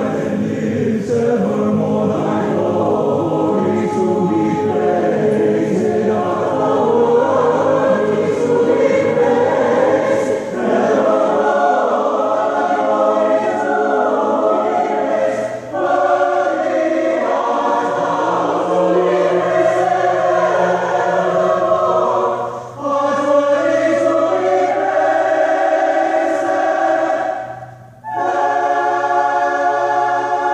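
University choir singing a sacred choral piece in sustained phrases, with short breaks between phrases about 10, 16, 23 and 28 seconds in.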